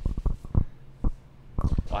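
Several short, dull thumps: a few in the first half-second, then a quick run of them near the end.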